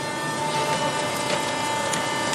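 Sugar mill machinery running: a steady mechanical drone with a constant high hum through it.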